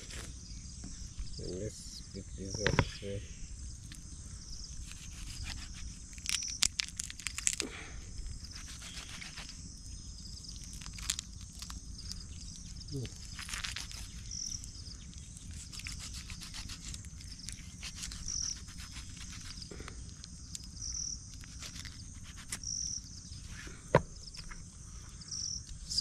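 A kitchen knife cutting up a plucked chicken: scattered clicks and cracks as the blade works through the joints and bones, the sharpest crack about two seconds before the end. Insects chirp steadily behind.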